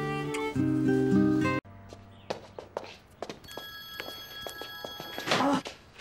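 Sustained background music that cuts off abruptly about a second and a half in. Then footsteps and light knocks in a room, with a mobile phone ringing from about three and a half seconds in.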